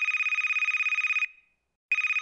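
Outgoing call ringing tone of a video call being placed: a high, rapidly warbling ring lasting about a second and a quarter, a short silence, then the next ring starting near the end.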